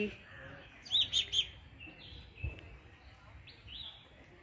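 Birds chirping: a quick run of three short chirps about a second in and another chirp near the end. A soft low thump comes about halfway.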